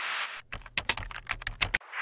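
Computer keyboard typing sound effect: a quick run of key clacks lasting a little over a second, between two short whooshing swishes.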